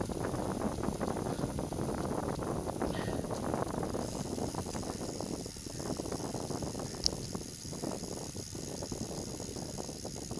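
Wind rushing over the microphone of a camera on a moving bicycle, mixed with the tyres rolling on the track surface, with one sharp click about seven seconds in.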